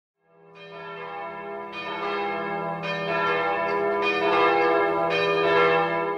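Bell tones struck one after another about once a second, each ringing on and stacking over a steady low hum, so that the sound grows louder.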